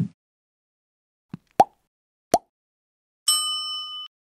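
Sound effects of a broadcast transition: the tail of a low hit at the start, three short pops about a second apart, then a bright ringing chime of several steady tones near the end.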